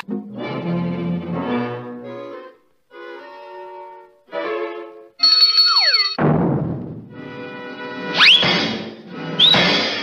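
Orchestral cartoon score with timpani, punctuated by slapstick sound effects: a loud crash about six seconds in, then two quick rising whistle-like glides near the end.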